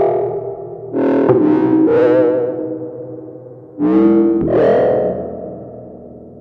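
Buchla Easel analog synthesizer sounding sparse, sharply struck notes that ring and fade, a pair about a second in and another pair near four seconds in, some with a wobbling pitch. The notes are triggered by an Asplenium fern through electrodes on its leaves.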